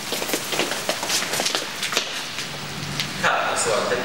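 Aerosol can of fly spray hissing, with scattered knocks and shuffling around it. A voice comes in near the end.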